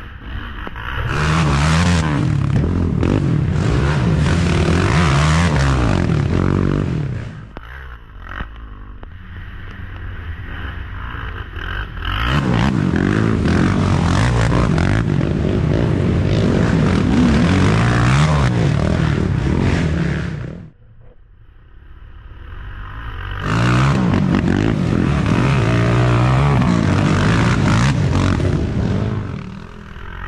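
Racing ATVs passing one after another, three in all, each engine revving up and down with the throttle through a turn. The sound swells in as each quad nears and fades before the next one arrives.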